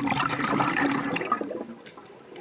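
Scuba diver's exhalation through the regulator: a loud burst of bubbles gurgling past the camera housing, starting suddenly and dying away after about a second and a half.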